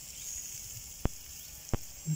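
Two short, sharp clicks, about a second in and near the end, over a steady faint high hiss.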